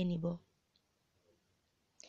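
A voice speaking briefly at the start, then near silence, with a single sharp click at the very end.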